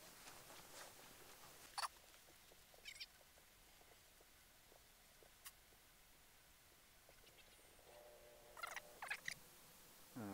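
Near silence: faint outdoor ambience with a few brief, faint sounds, one about two seconds in and a small cluster near the end.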